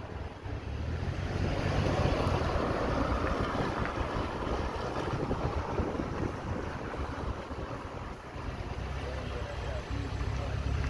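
Wind rushing over the microphone of the following vehicle, with the low hum of its engine running at slow speed underneath, strongest in the first few seconds.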